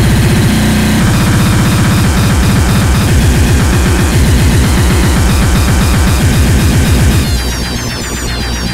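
Splittercore electronic music: an extremely fast, distorted kick-drum stream, so dense the beats almost merge under a wall of noise. Near the end it drops to a quieter section with warbling high synth lines.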